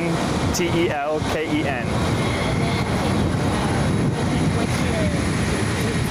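Steady jet aircraft engine noise on an airfield flight line, a continuous rush with a faint high whine in it. A short voice sound comes about a second in.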